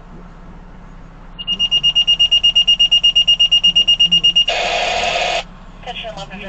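Fire dispatch alert: a high beep pulsing rapidly, about eight beeps a second for some three seconds, then a short, loud burst of radio static before the dispatcher's voice comes through.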